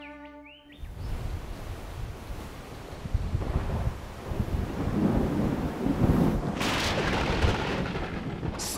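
Thunderstorm: deep thunder rumbling and building in loudness, with a sharper crack about seven seconds in.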